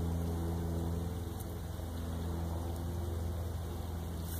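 A steady, low machine hum holding one even pitch.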